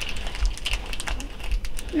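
Heartbeat stuffed hippo playing a recorded baby's heartbeat as a low pulsing sound, with light irregular clicks over it.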